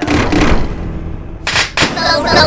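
Several cartoon soundtracks playing over each other. A sudden loud noisy burst at the start fades away, then two sharp, gunshot-like bangs come close together about one and a half seconds in.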